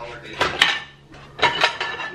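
Dishes and cutlery clinking against each other and the wire racks of a dishwasher as it is emptied: two quick pairs of clinks about a second apart.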